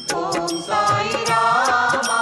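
Indian devotional song to Sai Baba: a sung, chant-like vocal line over rhythmic percussion accompaniment.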